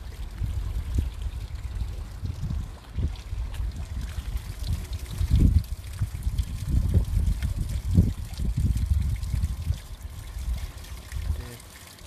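A fountain's water splashing steadily, under a low, uneven rumble on the microphone.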